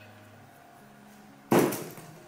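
A short burst of aerosol spray, starting suddenly about one and a half seconds in and fading within half a second, as lace adhesive spray is shot under a wig's lace at the hairline.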